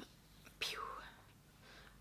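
A woman's short, breathy whispered vocal sound about half a second in, lasting about half a second, with faint room tone around it.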